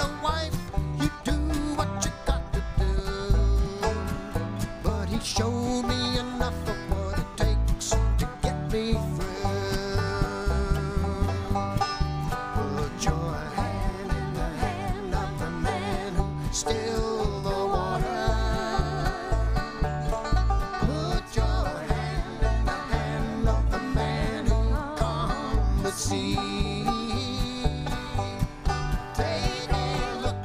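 Live acoustic bluegrass band playing: banjo, acoustic guitars and upright bass, with a steady beat from the bass.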